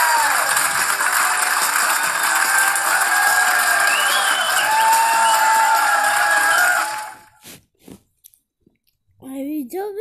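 Studio audience applauding over the show's closing theme music, which cuts off abruptly about seven seconds in. A few faint clicks follow, then a voice starts speaking near the end.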